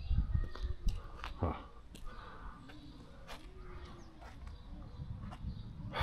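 Faint, low rumble of distant thunder from an approaching thunderstorm, under scattered clicks of a handheld camera being moved.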